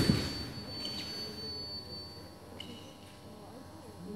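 Electronic fencing scoring apparatus sounding a steady high beep for a little over two seconds, registering a touch in a sabre bout. It follows a sudden loud burst at the start as the fencers meet, and two short, lower beeps come about a second and two and a half seconds in.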